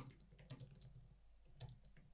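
Faint typing on a computer keyboard: a few irregular keystrokes, the sharpest right at the start and a quick run of them about half a second in.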